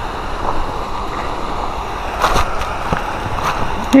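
Steady rush of water pouring over a concrete spillway, with a few light clicks about halfway through and near the end.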